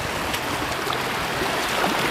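Shallow seawater sloshing and trickling close to the microphone, a steady wash of noise.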